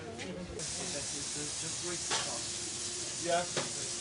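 Steady sizzling hiss of food frying in a ship's galley, starting suddenly about half a second in, over a faint steady hum, with a short spoken "yeah" near the end.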